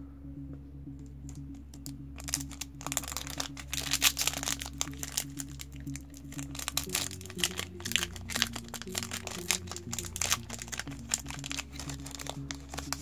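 Foil booster-pack wrapper crinkling and being torn open by hand: a dense crackle starting about two seconds in, loudest around four seconds. Steady background music plays underneath.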